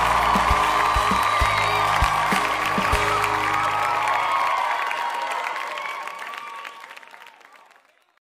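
Background music with a beat and bass notes under a dense noisy layer, fading out over the last few seconds to near silence.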